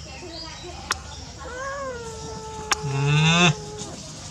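A kitten crying with one long, drawn-out meow that starts about a second and a half in and holds for over two seconds, falling slightly in pitch. Two sharp clicks come just before and during the meow.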